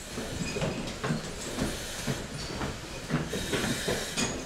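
Firefighters in masked breathing apparatus moving up a stairwell with a hose: a steady hiss with scattered footfalls and knocks of equipment.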